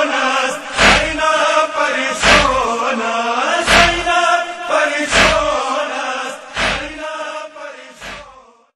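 A noha lament chanted by a male voice, kept in time by loud unison chest-beating strikes (matam) about every second and a half. It fades out near the end.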